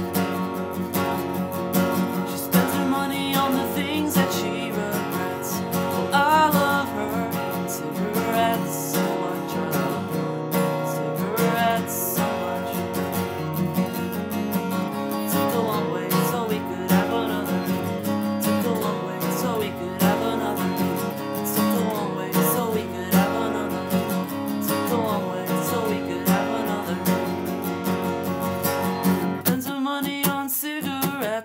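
Steel-string acoustic guitar strummed in a steady rhythm, chord after chord.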